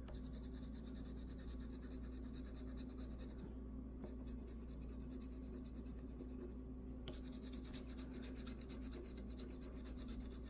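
Scratch-off lottery ticket being scratched, a faint dry rasping in quick repeated strokes as the coating is rubbed off the play area. It pauses briefly about three and a half seconds in and again near seven seconds.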